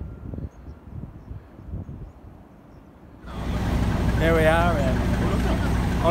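Wind buffeting the microphone at first. About three seconds in, this gives way to a steady low engine hum from a train standing at the station, with a person talking over it.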